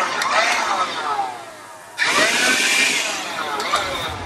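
Black & Decker Dustbuster NVB115JM 3.6 V cordless handheld vacuum running with a high whine. About a second in it is switched off and winds down with a falling pitch. About two seconds in it is switched on again with a rising whine, and it begins to wind down again near the end.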